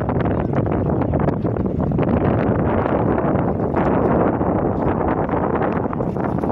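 Wind blowing across the microphone: a loud, steady rush with gusty crackles.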